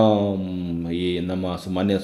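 A man's voice drawing out one long hesitation sound, an "uh" held at a steady pitch for about a second and a half, followed by a short syllable near the end.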